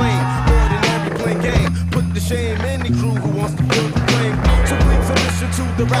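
Hip-hop track in a break between rap verses, with a steady bass line and drum beat, and skateboard sounds mixed over it: wheels rolling and the board clacking.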